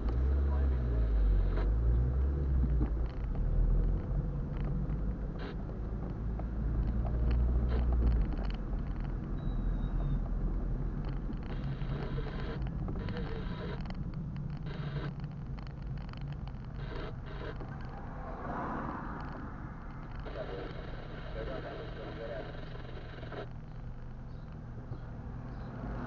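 A car's engine and road rumble heard from inside the cabin as it pulls away and drives slowly. The engine note rises over the first few seconds and the rumble is loudest for about eight seconds, then settles to a steadier, quieter hum.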